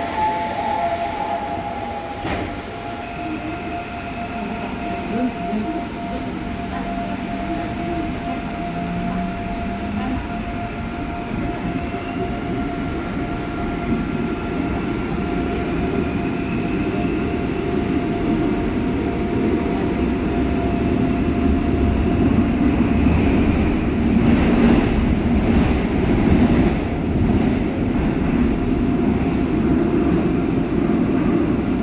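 Inside the carriage of a new Seoul Line 5 subway train with permanent-magnet (PMSM) traction motors: the doors shut with a knock, then the train pulls out and accelerates, the traction motors' whine rising in pitch. The rumble and running noise grow louder as it gathers speed into the tunnel.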